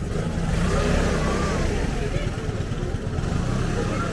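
A motor vehicle passes close by in the street, its engine swelling in the first second and easing off after about three seconds, with people talking nearby.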